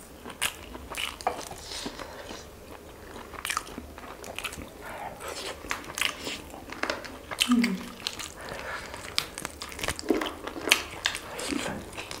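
Close-miked eating of crispy fried chicken wings: many short, sharp crunches from bites, with chewing and mouth sounds in between.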